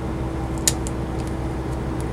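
Cummins ISL straight-six diesel idling, heard from inside the motorhome's cab as a steady low hum with a steady drone above it, and one sharp click about two-thirds of a second in.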